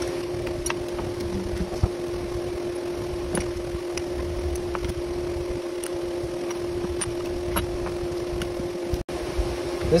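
A steady low hum runs throughout, with a few light, sparse metal clicks and taps as the steel vise jaws are handled on the fixture plate. The sound drops out for an instant near the end.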